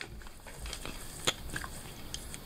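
A paper envelope being handled, with faint crinkling and rustling and a few sharp clicks, the clearest a little over a second in.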